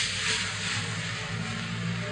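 Cloth rustling as a group of men in suits raise their arms together to vote, swelling at the start and slowly dying away, over a low steady hum.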